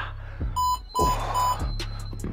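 Three short, high electronic beeps less than half a second apart from a workout interval timer counting down the last seconds of the exercise interval, over background music with a steady beat.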